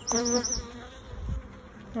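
Honeybees buzzing over an open hive: a close, strong buzz in the first half-second, then a fainter steady hum.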